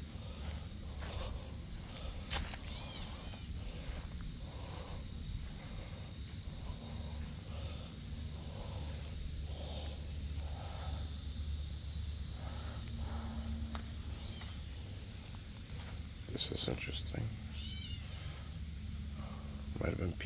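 Outdoor ambience with a steady low rumble on the microphone. A sharp click comes a couple of seconds in, and a brief high-pitched call of several stacked tones comes about three-quarters of the way through.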